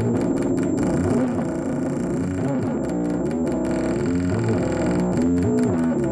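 Live noise-drone music from a modular synthesizer and amplifier feedback: dense, distorted pitched tones that bend up and down, steady in loudness, with a stuttering, chopped texture in the upper range a few times.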